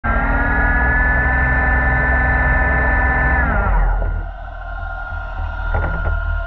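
A steady motor whine with a deep rumble beneath it, heard underwater. About three and a half seconds in it winds down, falling in pitch, and a fainter steady whine carries on.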